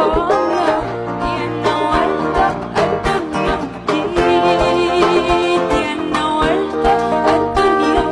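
Live band music: a woman sings over a steady drum-kit and conga beat, with guitars and held horn or keyboard notes filling in around her phrases.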